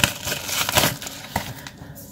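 Cardboard box and paper packaging being handled: rustling with a few light taps and clicks, loudest at the start and dying down over the second half.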